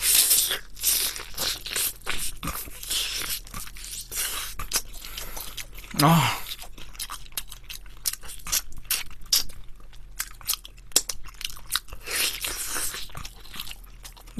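Close-miked eating of sauce-coated Korean fried chicken (yangnyeom chicken): biting, crunching and chewing in a quick run of sharp crunches. There is a short vocal sound from the eater about six seconds in.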